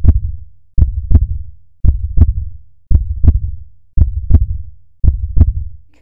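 Heartbeat sound effect: a steady lub-dub, pairs of low thuds repeating about once a second.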